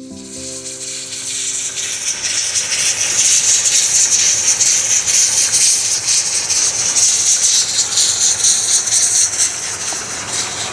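Background music fading out over the first two seconds, then a steady high hiss from the Mallet 403 metre-gauge steam locomotive and its train across the field, growing louder over the first few seconds and holding.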